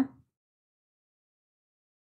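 A woman's last word trails off in the first moment, then total silence with no sound at all.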